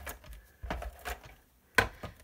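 Clicks and light clattering from a handheld plastic glue tool being worked over the craft desk, then one sharp knock near the end as it is set down on the desk.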